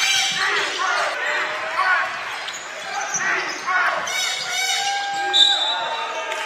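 Basketball game sound: the ball bouncing on the court amid players' shouted calls, with a few held high tones near the end.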